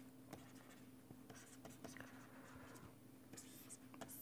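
Near silence with faint scratching and light taps of a stylus writing on a tablet, over a faint steady hum.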